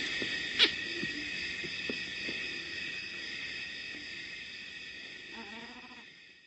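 Outdoor background sound: a steady high-pitched whine of several tones, one sharp click just over half a second in, and faint short low hoots. It all fades out near the end.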